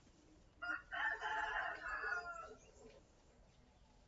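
A rooster crowing once: a single call of about two seconds, starting just over half a second in.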